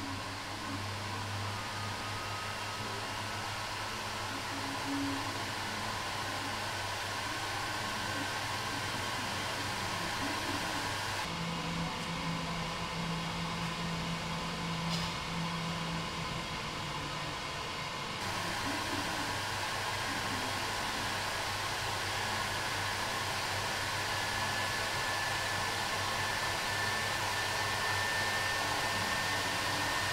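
Steady machine whir and air rush from an enclosed laser cell as it burns paint from an alloy wheel's rim, over a low hum with faint high whines, one rising slowly near the end. For several seconds in the middle the tone changes, with a deeper hum.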